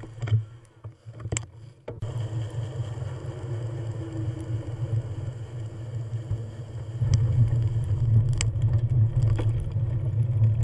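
Steady low rumble of wind buffeting the microphone and tyres rolling while riding a bicycle on a trail, with a few sharp clicks and rattles; the rumble grows louder about seven seconds in.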